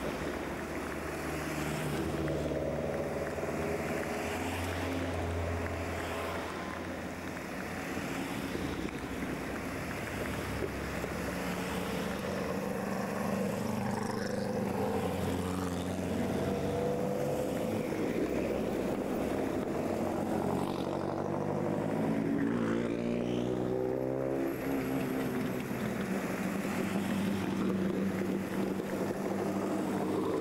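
Several rally cars and a course vehicle driving past one after another at an easy pace. Their engines overlap in a steady drone, and one engine's pitch rises and then falls about three-quarters of the way through as it passes close by.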